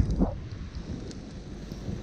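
Wind buffeting the camera's microphone: a low, steady rumble. There is a brief voice sound just after the start.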